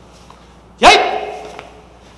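A man's single loud, sharp shout about a second in, dropping slightly in pitch and trailing off over about half a second. It is a karate kiai or shouted count marking the final kick of a counted set.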